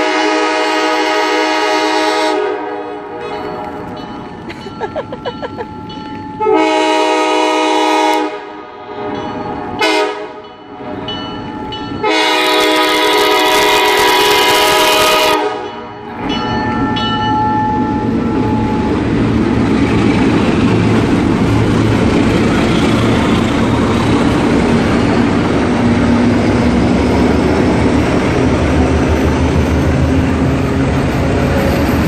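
Diesel locomotive horn of an Arkansas & Missouri passenger train sounding the grade-crossing signal: two long blasts, a short one and a final long one. The train then passes close by, with a loud, steady rumble of the locomotive and the passenger cars rolling over the rails.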